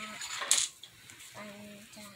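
A single sharp clink of small hard objects about half a second in, followed later by a brief voice.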